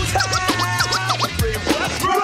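Hip hop beat with a bass line, steady hi-hat ticks and turntable scratching in short pitch-sweeping strokes.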